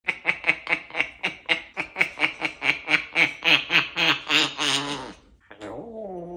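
An African grey parrot imitating a human laugh: a rapid run of 'ha-ha-ha' notes, about four a second, for some five seconds, the last ones running together, then a rising 'hello' right at the end.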